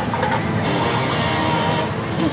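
Pachislot machine sound effects over the steady din of a pachinko parlour, with a bright high sound held for about a second in the middle while the reels spin.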